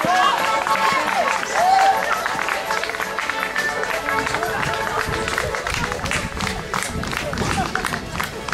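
A group of people calling and shouting as they run together, over music. Many short sharp strokes, claps or stamps, come thick and fast in the second half.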